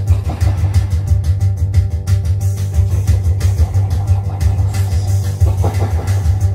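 Live experimental electronic noise music played on a table of synthesizer and electronics gear. A loud, dense low drone sits under steady higher tones, with a rapid flickering crackle over the top. Near the end a brighter mid-pitched swell rises out of it.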